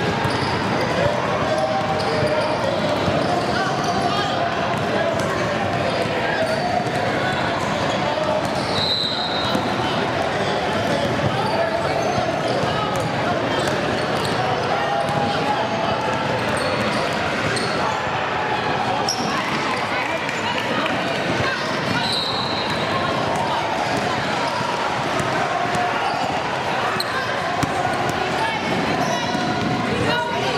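Basketball game sounds in a gym: a ball dribbling on the hardwood court and players and onlookers calling out, all echoing in the hall. A few short high-pitched squeaks come through, near the start, about a third of the way in and again about two-thirds in.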